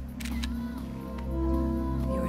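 A few camera shutter clicks, the first just after the start, over background music with a steady low pulse and sustained tones.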